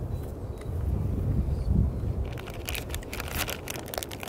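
Wind buffeting the microphone as a low rumble, joined about halfway through by a quick run of crackles and rustles.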